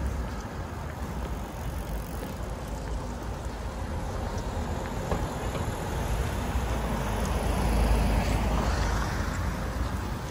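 Street noise with a steady low traffic rumble. A car drives past, growing louder to a peak about eight seconds in and then fading.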